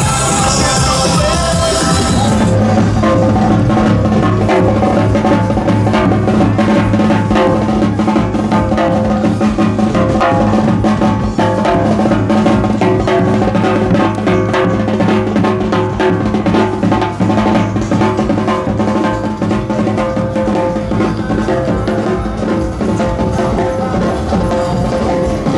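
Loud recorded music at first; about two seconds in it gives way to a street drum band, a big bass drum and a smaller kettle drum beaten in a quick, busy rhythm over steady held tones.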